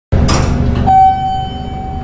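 Elevator car running with a low rumble, then a single bell-like elevator chime about a second in that rings on and slowly fades.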